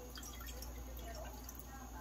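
Faint, quiet water sounds of a spoon moving in a glass pot of water, over a low steady hum.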